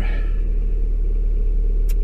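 Car engine idling, heard from inside the cabin: a steady low rumble.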